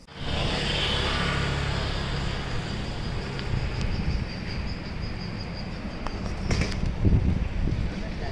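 Street ambience: a steady din of traffic and scooters, with a few sharp knocks about six and a half to seven seconds in.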